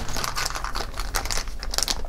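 A plastic LEGO minifigure blind bag crinkling as it is handled, a quick irregular run of small crackles.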